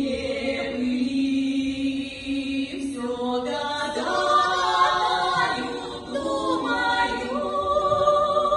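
A women's vocal quartet singing in harmony with long held notes; the sound thickens into a fuller chord with higher voices from about three seconds in.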